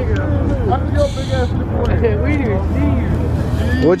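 Voices talking in the background over the low, steady rumble of an idling vehicle engine.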